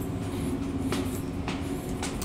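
Steady indoor machinery hum with a low rumble and a faint droning tone, with two short light ticks about a second in and again half a second later.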